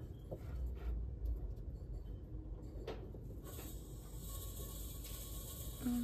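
Faint hiss of propane gas, starting about three and a half seconds in and stopping just before the end, as the tank valve is opened to pressurise the weed torch hose, with a few soft handling knocks before it.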